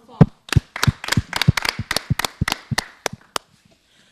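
A small group clapping their hands: a quick, uneven run of claps that stops about three and a half seconds in.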